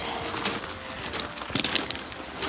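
Footsteps crunching on a wet gravel path strewn with fallen leaves, a string of short irregular steps with a louder cluster of crunches a little past halfway.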